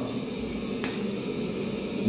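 Steady room background hum and hiss with a single sharp click a little under a second in.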